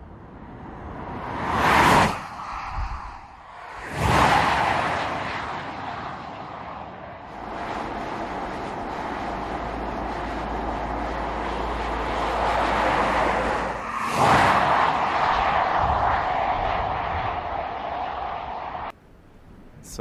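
Audi e-tron electric SUV driving past: quick rushes of tyre and wind noise swell and fade about 2, 4 and 14 seconds in, with no engine note. Steady road noise runs between them and cuts off suddenly near the end.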